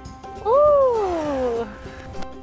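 A person's long drawn-out "ohhh" that rises briefly and then falls in pitch, over background music, as a rolling putt nears the hole.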